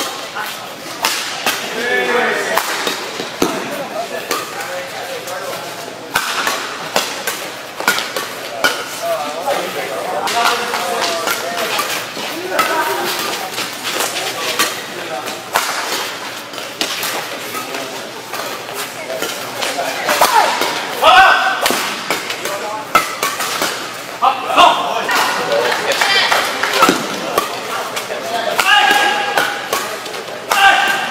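Badminton doubles rallies: repeated sharp cracks of rackets striking the shuttlecock, among them hard smashes that the uploader likens to a pistol shot, with players' shoes working the court.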